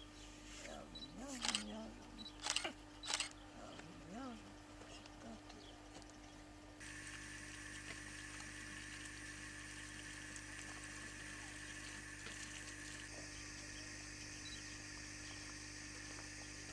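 A woman's low voice without clear words, with three short loud sharp sounds in the first few seconds. About seven seconds in, this changes abruptly to a steady high-pitched hum with hiss, an outdoor background.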